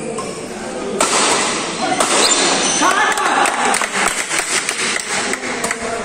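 Doubles badminton play in a large hall: sharp racket hits on the shuttlecock mixed with players' voices, with a quick run of sharp knocks in the second half.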